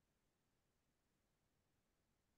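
Near silence: only faint background noise on the call audio.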